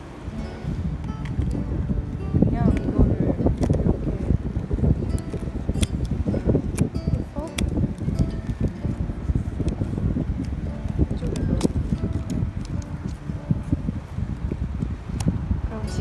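Wind buffeting the microphone in a heavy, uneven low rumble, with music underneath and a few sharp clicks as a 35 mm film camera is handled while a roll of film is loaded.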